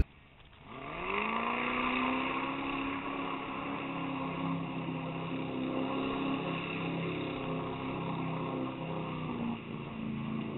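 The GM LS V8 engine of a lifted 4x4 rat rod, heard from a distance, revving up about a second in and then holding high, steady revs under load as the truck ploughs through a mud pit.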